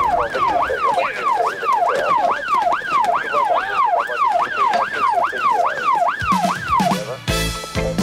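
Emergency-vehicle siren yelping rapidly up and down, about two sweeps a second. It stops about seven seconds in as title music with drums and guitar starts.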